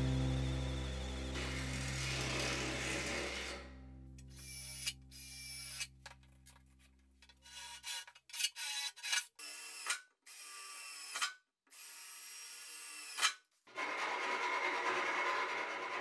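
Electric drill boring through the sheet-steel wall of a jerrycan, run in a series of short bursts, over background music that stops about halfway through.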